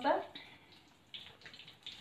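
Whole mackerel deep-frying in oil in a wok over low heat, a faint sizzling crackle that comes up about halfway through. A voice trails off at the very start.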